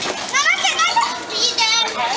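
Excited children's voices, high-pitched and rising and falling, twice in quick succession.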